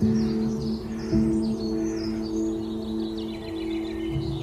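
Soft ambient music holding sustained low notes, with a fresh swell about a second in. A songbird chirps and sings in quick, high, varied notes over the music throughout.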